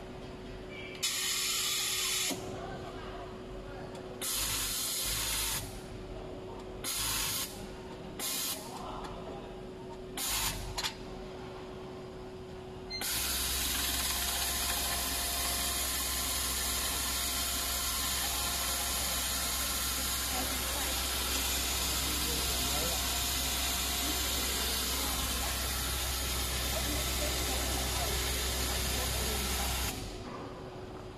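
Compressed-air hissing from an automatic mattress-protector sewing machine: short separate blasts of air during the first dozen seconds, then, about 13 seconds in, a continuous hiss over a steady low hum as the machine runs.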